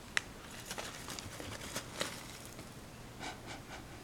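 Quiet handling of tea things: a sharp click just after the start, then a few faint ticks and rustles of the tea packet, and a soft sniff near the end as the dry Longjing leaves are smelled.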